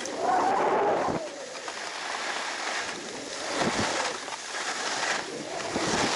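Skis scraping and hissing over packed piste snow during a descent, swelling with each turn, with wind on the microphone.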